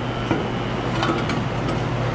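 A steady low hum, like a fan or other machine running, with a few faint light clicks as a loose steel bracket is handled against a steel frame.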